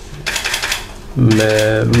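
A quick rattle of dry clicks in a short pause in a man's talk. His speaking voice comes back about a second in.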